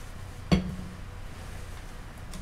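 A single sharp knock of a hard object against the worktable about half a second in, with a short low ring after it, over a steady low hum.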